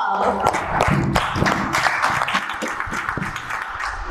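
Audience applause: a dense run of hand claps that eases off toward the end.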